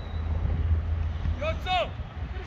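Wind buffeting the microphone as a steady low rumble, with a shouted call about one and a half seconds in.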